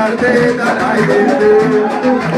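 Live hand drums played in a steady dance rhythm, with voices singing and hands clapping along.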